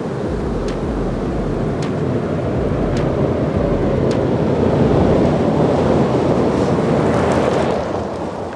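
Ram 2500 Power Wagon pickup with a 6.4-litre Hemi V8 driving past at speed on a gravel road. The rumble of tyres on loose gravel and the engine grows as it approaches and is loudest in the last few seconds, as it passes.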